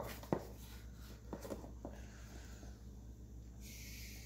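Quiet kitchen handling sounds: a sharp click, a few light taps of a measuring cup, then a brief soft hiss near the end as cocoa powder is tipped from the cup into a bowl of flour.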